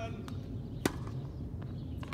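A tennis racket striking the ball once, a single sharp pop a little under a second in, with a couple of fainter ticks around it.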